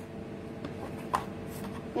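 Plastic popsicle mold being pulled out of its plastic stand: a faint tick, then one sharp click a little over a second in, over a steady low room hum.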